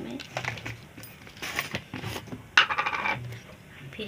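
Kitchen utensils and a jar being handled: clinks and scrapes of a steel spoon and jar, with a sharp clatter and a brief quick rattle about two and a half seconds in.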